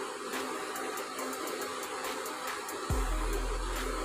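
Steady whirring of an induction cooktop's cooling fan under background music, with faint scrapes of a wooden spatula stirring thick moong dal halwa in the pot. A low hum comes in near the end.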